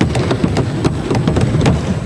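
Sheets of paper rustling close to a desk microphone as a page is turned, a dense run of small irregular crackles.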